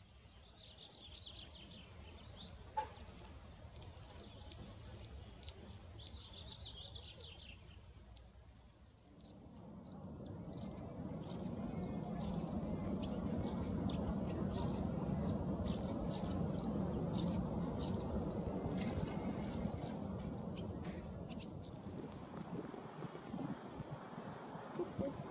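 Birds chirping. The first part has thin, high chirps and scattered sharp ticks. From about nine seconds, a run of sharp, high chip notes repeats over a steady low background noise.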